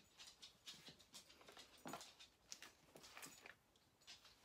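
Near silence: room tone with a few faint, scattered small ticks and rustles.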